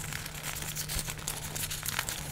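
Paper manuals and a thin plastic pouch crinkling and rustling as the booklets are pushed into the pouch, a steady run of small quick crackles.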